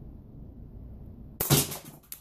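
K'nex TR-8 shotgun firing a load of green K'nex rods about one and a half seconds in: a sudden loud snap, then a quick run of clattering knocks as the rods hit the walls and stairs.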